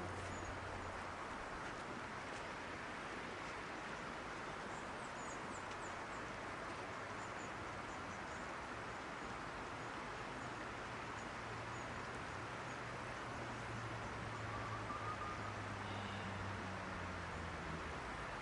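Outdoor ambience: a steady hiss with a few faint, high, short chirps, and a low hum that comes in about halfway through.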